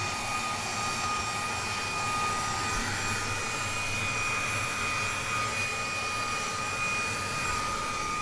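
Fanttik V10 Apex cordless handheld vacuum running steadily in its boosted power mode while sucking debris off car carpet: a rush of air with a steady high motor whine.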